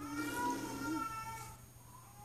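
A baby of about eight months making a drawn-out, whiny, meow-like vocal sound: one held note of a little over a second that fades out, then a fainter short note near the end.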